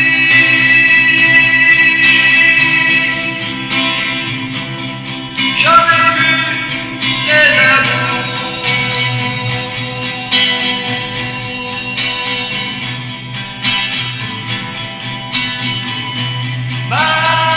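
Acoustic guitar accompaniment with a man singing long held notes in a French ballad.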